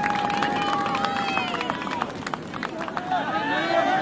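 Voices shouting across a soccer field: one long drawn-out shout that falls away after about a second and a half, then several short calls from different voices near the end.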